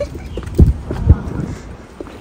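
Footsteps walking on a paved sidewalk: a run of short low knocks, with two heavy thuds about half a second apart near the middle.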